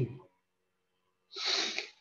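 A man's short, noisy burst of breath, about half a second long, after a second of silence.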